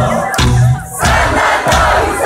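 Loud crowd noise over a live rock band playing at an outdoor concert stage, with a heavy beat recurring roughly every 0.7 s.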